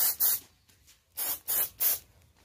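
Compressed-air spray gun spraying PU polish in short bursts, about four a second: two hisses at the start, a pause, then three more in the second half.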